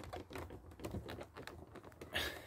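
Faint, irregular small clicks and taps of fingers pressing a plastic tail-light surround onto a car's bodywork, its clips seating into place.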